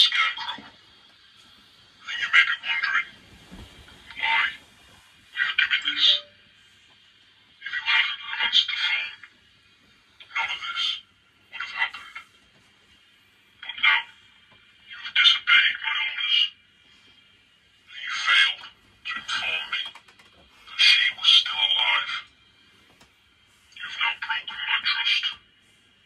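A thin, tinny voice speaking in short phrases, with pauses of about a second between them, as if heard through a small speaker or phone line.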